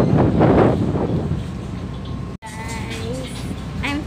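Wind gusting across the microphone over the steady low rumble of a passenger ferry under way, broken by a sudden momentary dropout a little over halfway through. After the dropout the rumble continues, quieter and steadier.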